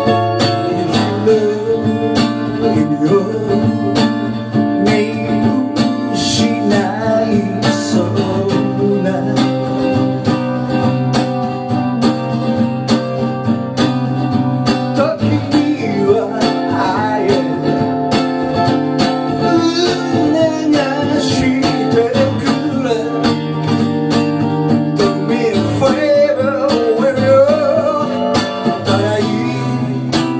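Steel-string acoustic guitar strummed through an instrumental break, with a harmonica playing the melody over the chords.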